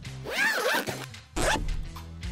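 Zipper of a fabric backpack being pulled open in two strokes, a longer pull followed by a short one, over background music.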